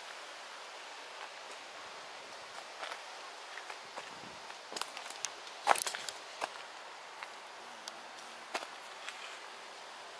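Quiet outdoor hiss with scattered light footsteps and scuffs, irregularly spaced, the loudest near the middle.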